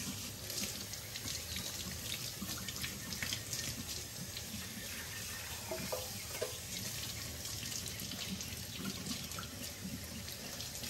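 Kitchen faucet running steadily, its stream splashing over a wet puppy's coat and into a stainless steel sink.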